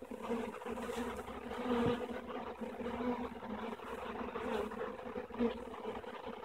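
A swarm of honey bees buzzing at close range as it clusters on a swarm trap: a steady hum that swells and fades a little.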